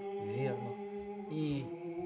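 Orthodox liturgical chant: voices holding a steady sung note, which moves to a new pitch about one and a half seconds in.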